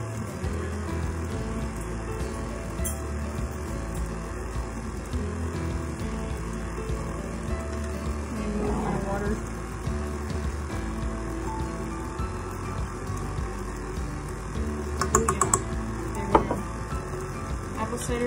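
Background music throughout, with a quick run of light clinks about fifteen seconds in and one sharper knock a second later.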